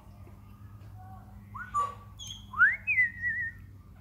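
African grey parrot whistling: a short rising note, then a louder quick upward-sweeping whistle that levels off into a wavering tone.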